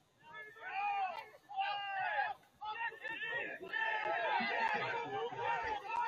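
Several people shouting and calling out in short, loud calls, with more voices joining and overlapping into a babble from about the middle on.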